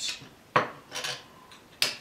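Metal bar clamp being set and tightened against wooden cleats: three sharp metallic clacks, the first the loudest.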